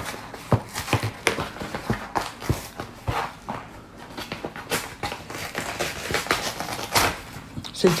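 Mailing envelope being opened by hand: rustling and crinkling of the packaging, with irregular sharp clicks and crackles as it is pulled and torn open carefully so it can be reused.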